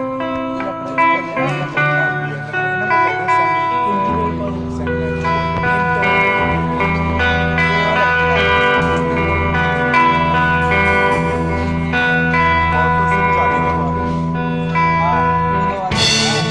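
Live band playing a guitar-led passage on acoustic and electric guitars, with a low bass part coming in about four seconds in and holding steady.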